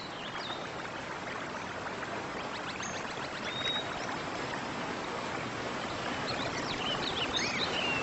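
Steady rush of flowing water, with birds chirping now and then and more often near the end.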